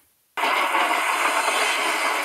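A brief silence, then a steady rushing noise of a car driving, heard from inside the cabin.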